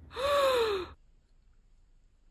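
A woman's voiced gasp of shock, a short breathy 'oh' under a second long that falls in pitch and cuts off suddenly.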